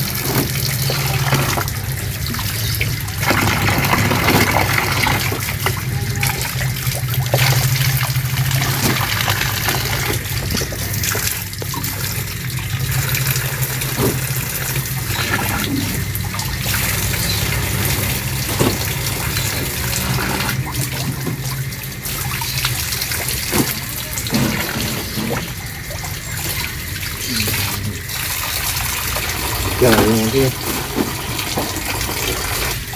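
Water running in a steady stream from a tap and splashing into a basin as peeled sugarcane stalks are rinsed under it by hand, with scattered knocks of the stalks against each other. A low steady hum sits underneath.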